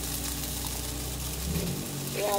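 Sweet-and-sour sauce with pineapple and carrots sizzling and simmering in a wok on a gas burner, with a low hum under it that stops about one and a half seconds in.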